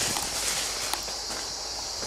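Footsteps and tall grass rustling as someone pushes through a grassy river bank, over the steady rush of a river.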